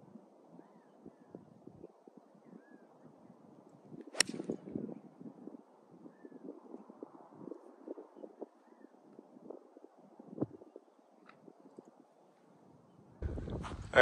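A single sharp crack of a two iron striking a golf ball off the tee, about four seconds in, over a faint steady outdoor hiss.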